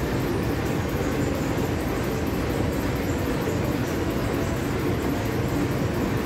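Large vintage multi-cylinder vertical stationary diesel engine running steadily, a dense, even mechanical beat.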